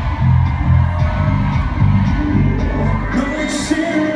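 Live pop music with a heavy, pulsing bass line and singing, played loud through an arena sound system and recorded from among the audience, with crowd noise under it.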